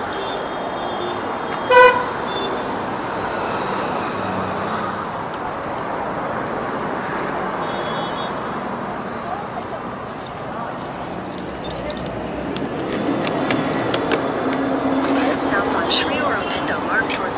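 Street traffic noise, with one short vehicle-horn toot about two seconds in, the loudest sound.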